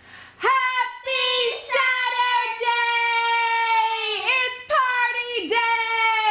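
A child singing in a high voice, drawing out a few long held notes with short breaks between them.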